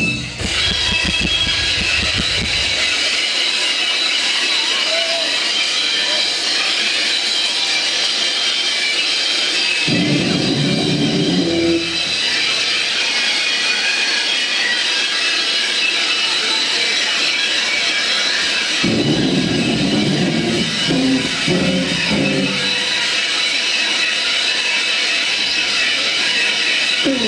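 Live noise-rock band holding a loud wall of electric guitar noise and feedback. Heavy low guitar and bass chords come in twice, briefly about ten seconds in and again for several seconds near twenty seconds.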